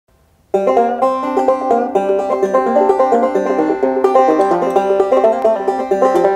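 Five-string banjo in double C tuning (gCGCD), picked slowly in two-finger thumb-lead style as a steady stream of plucked notes. The playing starts suddenly about half a second in.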